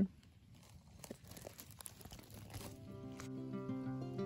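Faint crackling rustle of dry fallen leaves being disturbed, then acoustic guitar music starts up about three seconds in.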